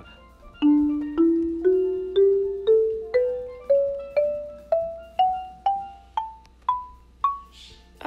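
Marimba sound from a phone app playing an ascending scale, one struck note at a time, about two notes a second. Fourteen notes climb evenly over about two octaves, and each rings briefly and fades before the next.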